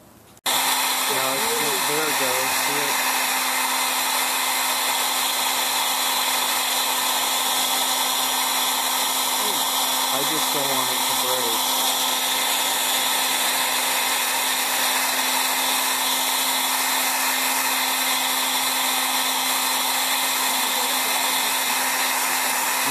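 Handheld hair dryer switched on about half a second in, then blowing steadily with a constant hum, heating a CRT's bonded safety glass to loosen it from the tube face.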